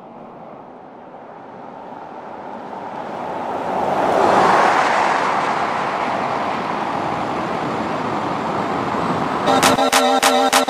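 2020 Ford Explorer ST driving on the road, its tyre and engine noise swelling to a peak about four seconds in as it passes, then holding steady. Music with a sharp, regular beat starts just before the end.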